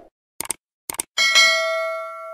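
Subscribe-animation sound effect: two quick double clicks, then a notification-bell ding about a second in that rings on with several steady tones and slowly fades.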